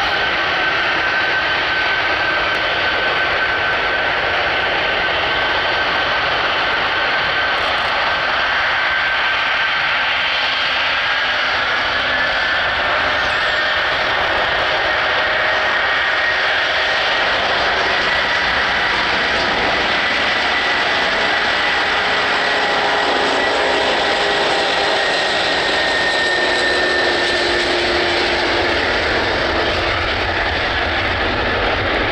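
Antonov An-124's four D-18T turbofan engines running at low power as the big freighter taxis, a loud steady jet roar with a high whine that rises slightly in pitch partway through and eases back near the end.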